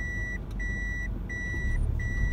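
A car's reverse-gear warning chime beeping steadily inside the cabin, about one and a half evenly spaced beeps a second at one high pitch, over the low rumble of the car: the car is in reverse and backing up slowly.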